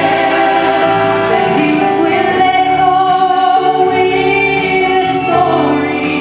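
A woman and a man singing a gospel song together into microphones, in harmony, holding long sustained notes.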